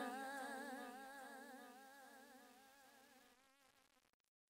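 Outro of a rap song: a single held note with an even vibrato fades out slowly and is gone about three seconds in.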